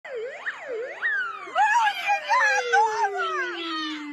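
A siren giving a fast rising-and-falling yelp about twice a second, then winding down in one long falling tone. Loud raised voices sound over the middle of it.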